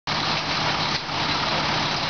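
Fire trucks' diesel engines idling with a steady low hum, under a constant wash of wind noise on the microphone.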